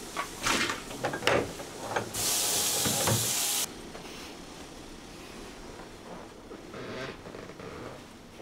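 Metal frying pan and spatula clattering as the pan is handled, followed by a loud, steady hiss lasting about a second and a half that starts and cuts off suddenly.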